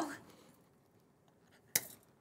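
A single sharp hand clap near the end, after the last spoken word of a goodbye fades out in a small room.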